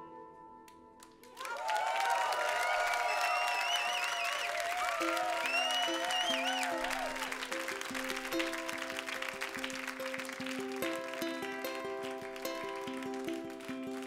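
The last notes of a song fade, then about a second in a concert audience breaks into applause with cheers and whistles. From about five seconds in, a ukulele starts picking a repeating run of notes while the applause goes on beneath it.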